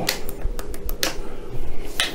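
Model-railway solenoid point motors fired one after another by a Megapoints System2 capacitor-discharge solenoid driver, each giving a sharp snap, about one a second, with lighter ticks between. Efficiency mode is off, so the capacitor fires at once and then recharges before the next solenoid.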